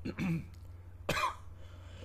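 A man gives one short cough about a second in, after a brief voiced grunt at the start, over a steady low hum.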